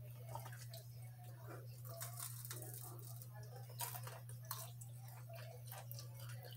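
A person quietly chewing sweet potato fries, with faint scattered clicks and rustles of fingers picking fries from a plastic container, over a steady low hum.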